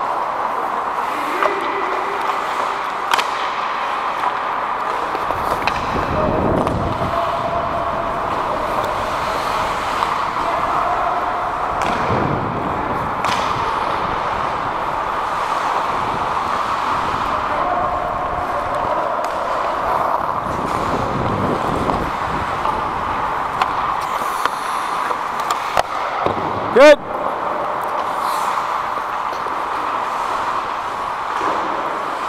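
Ice hockey game heard from on the ice: a steady hiss of skating with scattered clicks of sticks and puck, and players shouting to each other now and then. Near the end comes one loud, short cry close by.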